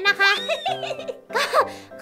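Background music under a young woman's voice speaking and giggling in Thai.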